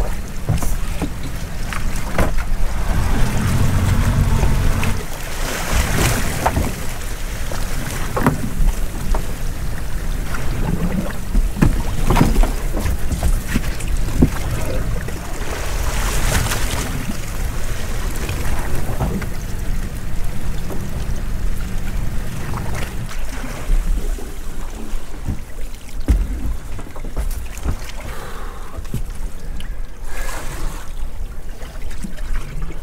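Wind buffeting the microphone and sea washing around a small open boat. Scattered knocks and splashes come as a lobster pot is hauled up over the side.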